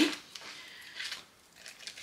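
Faint crinkling and rustling of a clear plastic zip-lock bag as ribbon bows are pulled out of it by hand.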